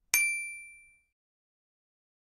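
A single bright bell-ding sound effect from an animated notification-bell icon being clicked: one sharp metallic strike that rings and fades away within about a second.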